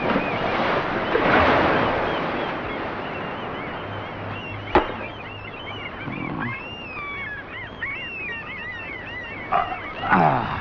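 Birds chirping in a busy chorus of short high calls. A wash of sea surf swells in the first two seconds, and a single sharp click comes about five seconds in.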